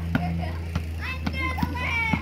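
A basketball bouncing on asphalt, several dull thumps a fraction of a second apart. A child's high-pitched voice rises over it in the second half.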